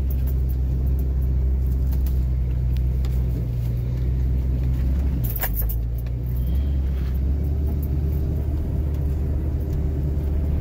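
Vehicle engine running steadily at low speed, heard from inside the cab while driving a dirt trail, with a brief cluster of sharp knocks about five and a half seconds in.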